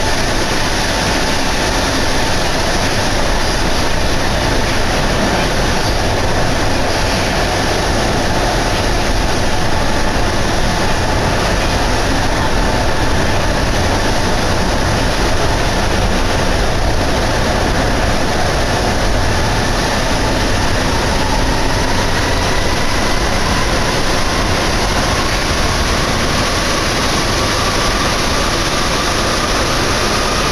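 Steady running noise heard inside a Sapporo Municipal Subway Namboku Line car, a rubber-tyred metro train under way. A faint whine from the train slowly rises in pitch through the second half.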